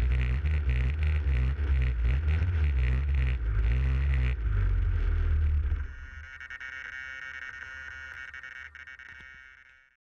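Background music with a steady beat and a moving bass line, which breaks off about four and a half seconds in; a quieter sustained tone follows and fades out at the end.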